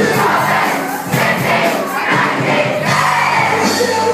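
Live worship band with drums and guitars playing loudly while a crowd of young people sings along.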